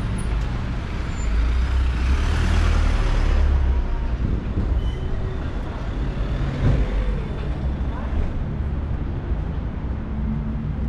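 City street traffic: a van and a car driving past close by, their engines and tyres loudest about two to three seconds in, over steady traffic rumble.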